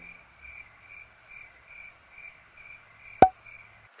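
Cricket chirps repeating evenly about twice a second, as a crickets sound effect over a faint hiss. A single sharp click about three seconds in is the loudest sound.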